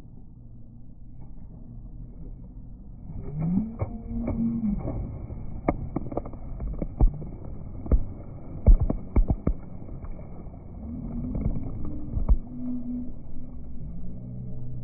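Slowed-down, pitched-down sound of children jumping into a swimming pool: a low rumble with drawn-out deep voice-like glides, then a run of sharp knocks and splashes as they hit the water, and more low glides near the end as they surface.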